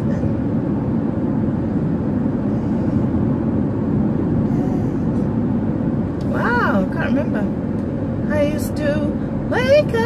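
Steady road and engine noise inside a moving car's cabin, with a voice singing briefly in the second half.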